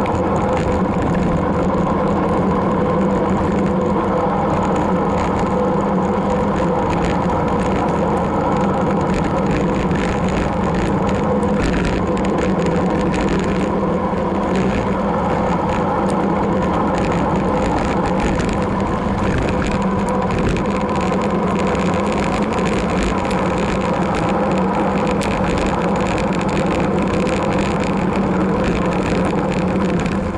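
Steady wind and road noise of a road bicycle in motion, heard through a bike-mounted camera, with a constant hum underneath.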